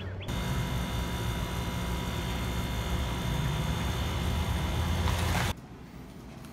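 Steady mechanical rumble with thin, steady whining tones above it, starting suddenly and cutting off abruptly near the end.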